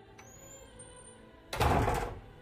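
Soft background music, broken about one and a half seconds in by a sudden loud burst of noise lasting about half a second.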